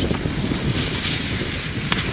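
Wind buffeting the microphone: a steady low rumble, with one brief click near the end.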